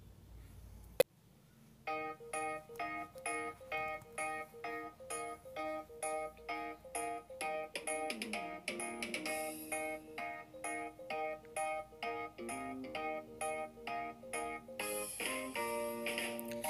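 A sharp click about a second in, then a recorded instrumental backing track starts about two seconds in. Bright keyboard-like notes play in a steady, even rhythm, with a lower melody line joining partway through, as the introduction before the singing.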